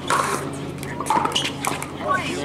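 Pickleball paddle striking a hollow plastic ball with a sharp pop on the serve, then a second pop about a second later as the ball is hit again.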